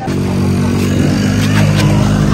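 A small engine running steadily at idle, an even hum with several steady tones, coming in abruptly and holding without revving.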